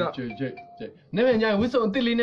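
Young men's voices, loud and drawn out, with a short steady beep-like tone about half a second in.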